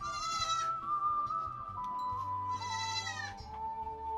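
A goat bleating twice, each call under a second long, the first at the very start and the second about two and a half seconds in, over background music with a steady melody.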